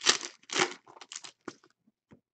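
Foil trading-card pack wrappers being torn open and crinkled by hand, in a run of short bursts, the loudest right at the start and about half a second in, with smaller crinkles after.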